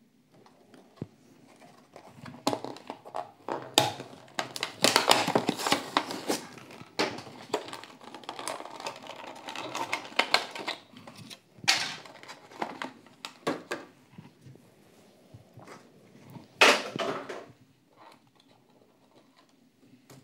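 Clear plastic blister packaging being handled and opened to free a diecast toy car: irregular crinkling, crackling and clicking of the plastic and card. There is a louder sharp crackle near the end.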